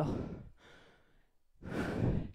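A woman's breathing while exercising, close on a headset microphone: a breathy exhale like a sigh trailing off at the start, a short pause, then another audible breath near the end.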